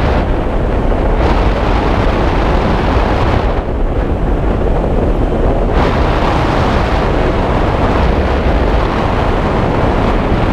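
Wind rushing over a skydiver's camera microphone during the descent: a loud, steady rush that turns duller twice, briefly near the start and for about two seconds from the middle.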